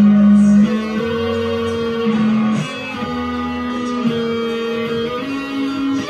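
Music led by an electric guitar playing long held notes that step to a new pitch every second or so, over a steady low bass line.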